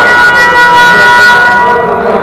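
A loud, steady signal made of several pitches sounding together, held for about two and a half seconds and cutting off near the end: a game-stoppage signal, such as a scoreboard horn or a referee's whistle, echoing in the gym.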